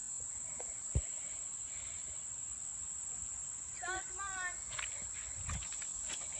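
Insects singing in the trees: a steady, high-pitched drone throughout. There is a soft thump about a second in and a brief quiet voice around four seconds.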